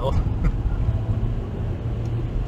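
Cabin noise of a Mazda 3 with a 1.6 MZR inline-four petrol engine cruising at about 90 km/h: a steady low engine and road drone under an even hiss from the winter tyres on wet asphalt.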